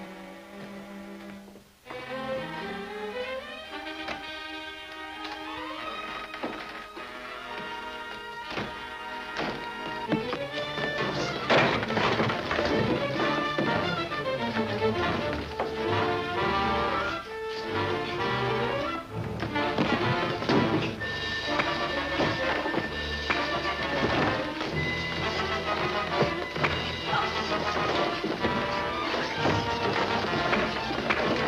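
Dramatic orchestral film-serial score with a run of thuds, whacks and crashes over it, the dubbed-in punch and impact effects of a fistfight. The music cuts out briefly about two seconds in, then builds and grows louder and busier with the blows near the middle.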